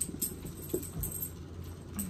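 Light handling noise: scattered small clicks and short metallic jingles with a soft thump about a second in, over a steady low hum.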